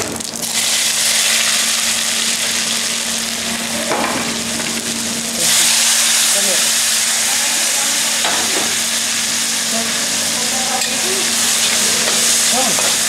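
Spices sizzling in hot ghee in a kadai. About five and a half seconds in, chopped tomatoes are tipped into the hot fat and the sizzle jumps louder, then carries on as they are stirred.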